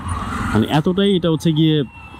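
A man speaking Bengali, opened by a brief rush of noise before the words begin.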